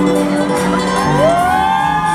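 Live band music in a large arena under a crowd cheering and whooping, with high voices gliding up and down about a second in.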